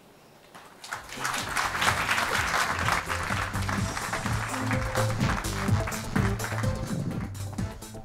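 Audience applause starting about a second in, with music playing underneath.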